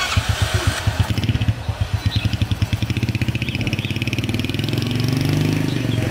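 Honda Win motorcycle engine kick-started: it catches at once and runs with an even, pulsing beat, then revs up and climbs in pitch through the second half as the bike pulls away.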